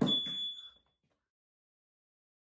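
High-pitched electronic alarm beep, a piezo tone like a smoke alarm's, sounding once and cutting off abruptly under a second in.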